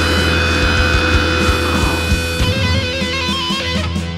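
Metal music with electric guitar and drums; about halfway through the drums drop away and a stepped melodic line carries on over a steady low bass tone.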